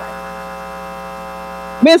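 Steady electrical mains hum with a stack of overtones, unchanging in pitch and level. A woman's voice cuts in near the end with "Mr."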